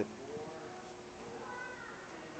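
A puppy whining faintly: short, high whimpers, the clearest about a second and a half in.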